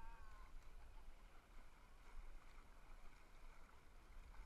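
A dog gives one short, faint, wavering whine at the very start, then near silence over a low rumble.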